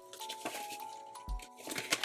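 Soft background music with long held notes, over the light rustle of paper banknotes being handled and slipped into a binder envelope.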